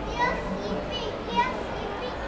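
Children's voices in a busy public hall, with two high-pitched calls, one just after the start and one about a second and a half in, over a steady low background murmur.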